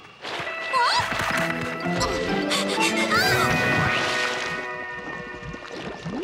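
Cartoon soundtrack: orchestral music with comic sound effects, a sudden crash at the start followed by several more crashes and thumps, and short rising and falling whistle-like glides.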